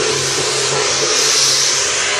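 Temple-procession percussion, mainly large hand cymbals, ringing in a loud, steady, hissing wash with a faint low tone underneath.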